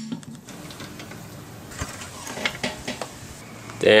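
Light, irregular metallic clicks and taps of lug bolts and tools being handled while a wheel is fitted to the hub.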